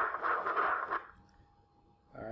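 Continuous-wave Doppler audio from an ultrasound machine scanning the heart: a pulsing hiss of blood flow through the mitral valve. It cuts off about a second in, leaving only a faint steady tone.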